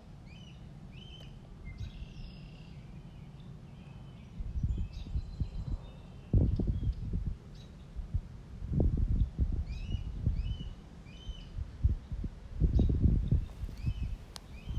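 Bird chirping outdoors in two short runs of quick repeated chirps, one near the start and one a little past the middle, over low rumbling gusts of wind buffeting the microphone, which come and go from about a third of the way in and are the loudest sound.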